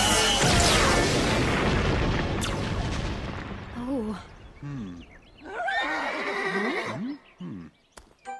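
A loud magic blast that fades away over the first few seconds, then a horse whinnying in several wavering calls, the longest about six seconds in.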